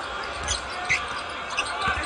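A basketball being dribbled on a hardwood arena court, a few separate bounces, over a steady crowd murmur.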